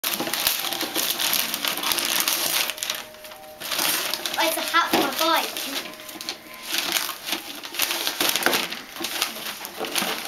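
Wrapping paper and tissue paper rustling, crinkling and tearing as a present is unwrapped, with brief voices about halfway through.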